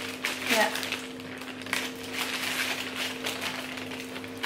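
A steady hum runs throughout, with scattered light clicks and crinkles from snack items and packaging being handled. A short spoken "yeah" comes near the start.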